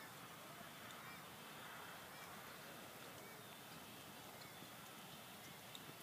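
Near silence: faint outdoor background hiss with no clear event.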